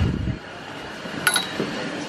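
Rumbling handling noise from a hand-held camera that cuts off suddenly, then a single short metallic clink a little over a second in.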